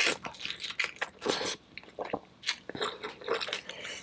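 Close-miked eating of sauce-coated shrimp: a bite, then wet chewing and smacking, with sharp clicks and crunches coming at uneven intervals.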